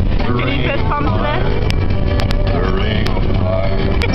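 Voices singing along loudly inside a moving car, over the Jeep's steady road and engine rumble, with a few sharp taps.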